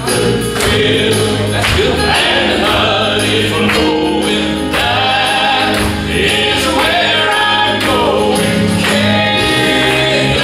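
Male southern gospel quartet singing in four-part harmony into microphones, with keyboard accompaniment over a steady beat.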